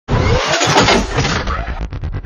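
Logo-intro sound effect of a car engine starting and revving, rising in pitch, then breaking into a choppy stutter near the end.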